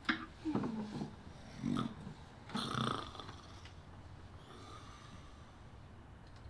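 A sleeping person snoring and snorting: four short snorts in the first three seconds, then only a faint steady background.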